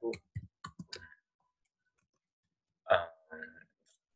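Computer keyboard keys being typed: a quick run of about half a dozen clicks in the first second, then a pause. A short hesitant "um" follows near three seconds.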